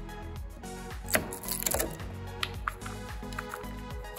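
Background music, with a few sharp cracks near the middle as the thin wood slivers left by table-saw kerfs are snapped out of a half-lap notch by hand.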